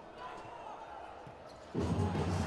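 Futsal ball being played on an indoor court: faint ball touches and bounces over quiet arena ambience, with louder crowd noise coming back in near the end.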